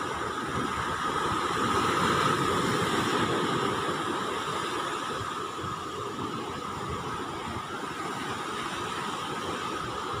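Steady rushing of rough surf breaking on the beach, with wind on the microphone, swelling a little about two seconds in. A faint steady high whine runs underneath.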